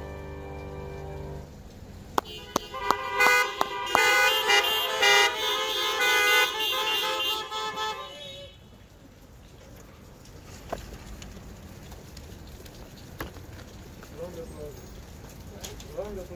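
The last handbell chord rings out and fades, then many car horns honk together for about six seconds as applause, with short toots and longer held blasts overlapping. Faint voices are heard near the end.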